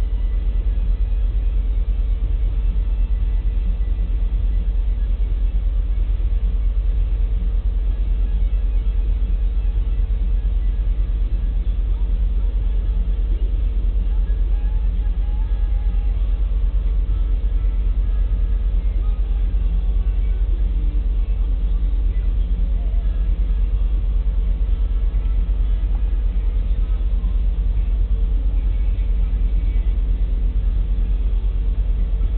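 Loaded coal hopper cars of a long freight train rolling slowly past, making a steady low rumble with no separate wheel clicks.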